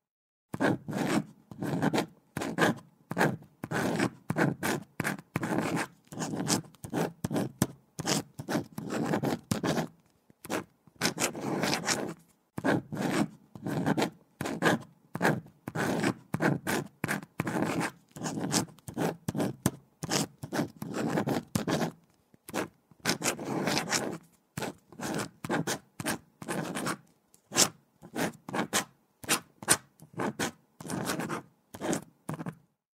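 A pen writing on paper: quick scratching strokes, several a second, in runs broken by brief pauses.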